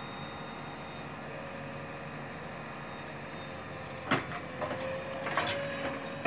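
JCB 3DX backhoe loader's diesel engine running steadily while the backhoe works. Sharp knocks come about four seconds in and again around five and a half seconds in, and a steady tone sets in after the first knock.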